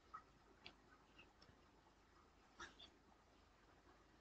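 Near silence, room tone broken by a few faint short clicks; the clearest come just after the start and about two and a half seconds in.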